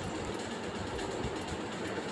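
Steady background noise, an even hum and hiss with no distinct events.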